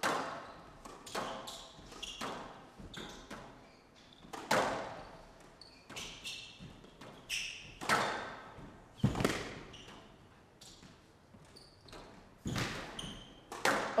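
A squash rally: the ball struck by rackets and hitting the court walls, a sharp hit roughly every second, each with a short echo. Brief high squeaks of players' shoes on the court floor come between the hits.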